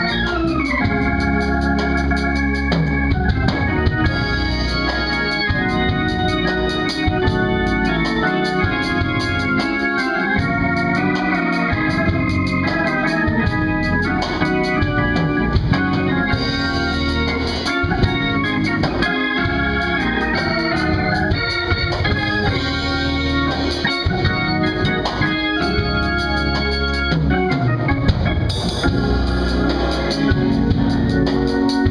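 Organ music: an organ playing sustained chords that shift from one to the next over a held bass line.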